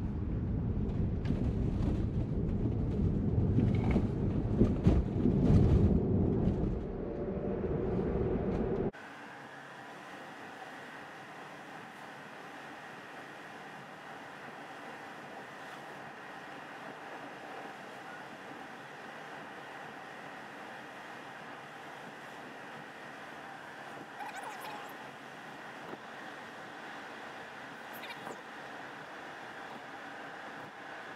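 Tyre and road noise inside the cabin of an electric Tesla on the move. It starts as a loud low rumble, then about nine seconds in drops abruptly to a quieter, steady hum.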